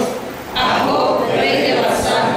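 A woman reading aloud into a handheld microphone, with a short pause about half a second in.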